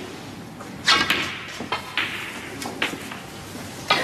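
Snooker cue striking the cue ball with a sharp click about a second in, followed by several softer clicks and knocks of the balls as the cue ball travels around the table.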